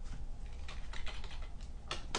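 Typing on a computer keyboard: an irregular run of quick key clicks, the loudest near the end.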